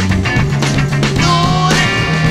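Late-1960s funk recording by a band of bass guitar, drums, guitar, organ, trumpet and saxophones, playing a steady groove. A stepping bass line and regular drum hits carry it, and a held melodic note slides in a little past the middle.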